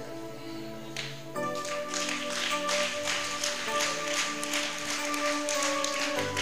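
Soft, held keyboard chords playing as background music, changing chord about a second and a half in and again near four seconds, with faint clicks over them.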